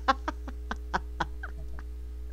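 A woman snickering quietly: a run of short, breathy laugh pulses, about four a second at first, then slowing and dying away about a second and a half in.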